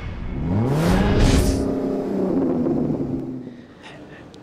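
Car engine revving sound effect: the engine note climbs steeply about half a second in, with a whoosh, then holds and fades away near the end.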